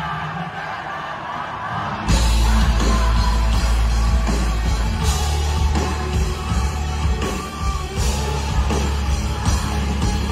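Live rock band with guitar, bass and drums playing at a festival, in a fan-shot recording. For about the first two seconds the bass and drums drop out and the crowd sings and yells. Then the full band comes back in.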